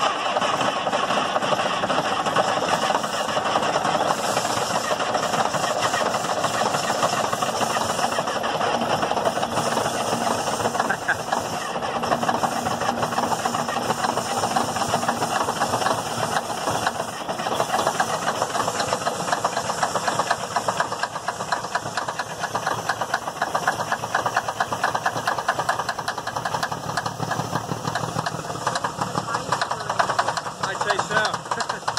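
1977 Peterbilt 359's diesel engine running steadily, just revived after sitting for 18 years.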